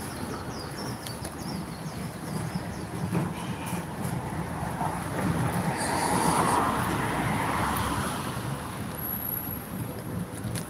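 Street traffic passing, with one vehicle swelling louder and fading away about six to eight seconds in.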